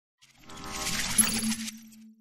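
Channel-logo intro sting: a shimmering sound-effect swell with high ringing tones and a sharp peak about a second in. It cuts off suddenly, leaving a low hum that fades away.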